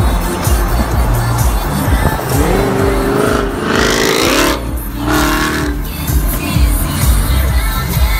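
A Dodge Challenger accelerating hard in the next lane: its engine revs rise in pitch for about two seconds, break briefly at a gear change, then pull again. Music plays underneath throughout.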